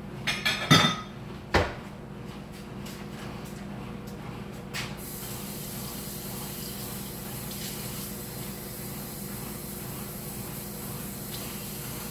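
A few knocks and clatters of kitchenware, then a kitchen tap running steadily from about five seconds in, filling a glass measuring cup with water.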